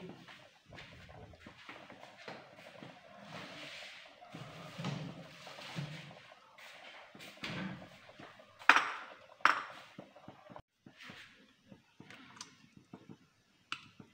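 Quiet handling of kitchen utensils, with two sharp clinks of a utensil against a bowl or pan about nine seconds in and a few fainter ticks near the end.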